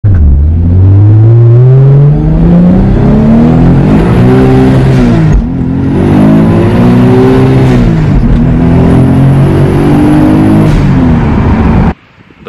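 Turbocharged Toyota 2JZ straight-six in a Volvo 240 wagon, heard from inside the cabin, pulling hard under acceleration with its pitch climbing. A brief dip about five and a half seconds in marks a gear change.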